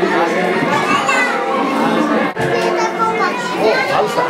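Children's voices and adult chatter overlapping in a crowded room.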